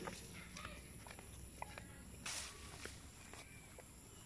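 Faint footsteps of rubber flip-flops on a wet dirt path through grass: scattered light slaps and clicks, with a short swish about halfway through.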